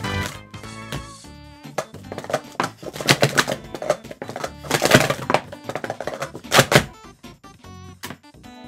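Hard plastic sport-stacking cups clattering in a rapid run of sharp clicks for about five seconds as a full cycle stack is built up and taken down on the mat, over background music.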